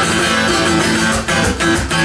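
Electric guitar strummed live through an amplifier: sustained chords that change, with short breaks between strums.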